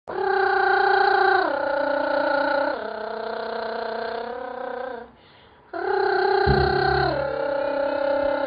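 Channel intro jingle: three long held notes stepping down in pitch, a short break just after five seconds, then the same falling phrase again with a low bass joining in.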